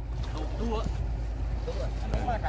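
Wind rumbling on the microphone over shallow muddy water sloshing around a man wading and handling a wire-mesh fish trap, with faint voices in the background.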